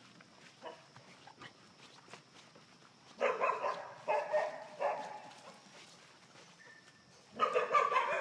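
Puppies barking and yapping in play, in two bursts: one about three seconds in lasting nearly two seconds, and another starting near the end.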